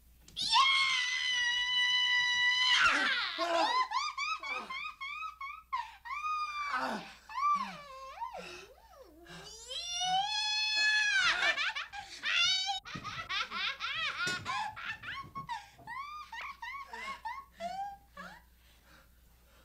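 A woman's shrill, high-pitched shriek held for about two seconds, then a long stretch of warbling, cackling laughter that swoops up and down in pitch, with a second drawn-out high shriek about ten seconds in. It is the maniacal laughter of an actress playing a possessed 'deadite'.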